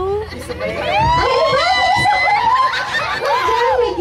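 Several high-pitched voices laughing and squealing at once, starting about a second in, with one squeal held on a steady high note.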